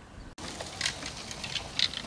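A bicycle passing on a gravel path: irregular crunching from its tyres, with light clinks, starting after a sudden cut about a third of a second in.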